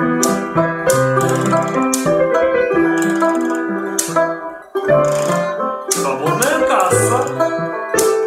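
Banjo being strummed and picked in a small ensemble, over long held low notes from another instrument. The music breaks off briefly a little past halfway and then picks up again.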